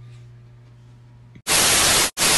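A low steady hum with faint rustling, then about one and a half seconds in, a loud burst of TV-style static hiss cuts in suddenly: an edited-in static transition effect.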